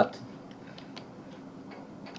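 A few faint, scattered computer keyboard key clicks.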